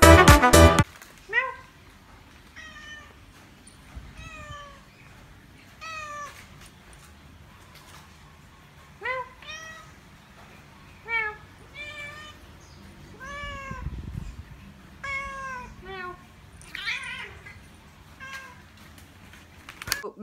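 Calico cat meowing repeatedly: about a dozen short meows, each arching up and down in pitch, a second or two apart. A snatch of music cuts off about a second in.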